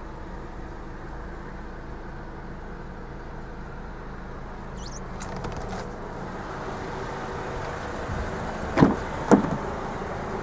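Steady low hum in a car's cabin, then two sharp clunks about half a second apart near the end as the car's doors are worked, the rear door being opened.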